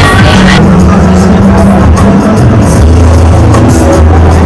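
Loud electronic dance music with a deep bass line and a steady beat.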